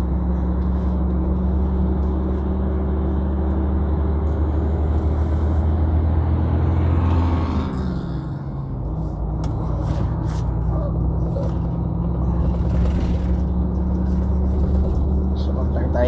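Heavy truck's diesel engine droning steadily, heard inside the cab while driving. About halfway through the engine note falls and the sound dips briefly, then the steady drone picks up again.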